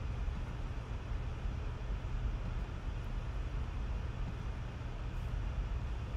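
Steady background noise, a low rumble with a hiss above it, with a faint click about five seconds in.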